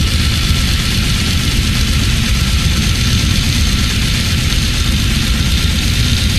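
Heavily distorted extreme metal: a dense, loud wall of down-tuned guitar, bass and drums with a heavy low end.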